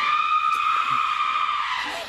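A woman's long, high scream, held on one pitch for about two seconds and dropping slightly at the end: a scream of horror raising the alarm over a stabbing victim.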